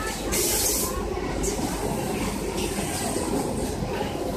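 Semi-automatic pet underpad packaging machine running: a steady mechanical rumble and clatter, with a brief hiss about half a second in.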